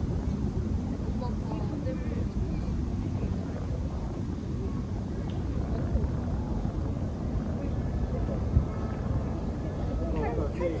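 Wind blowing across the microphone in a steady low rumble, with faint voices of people chatting nearby and one brief knock near the end.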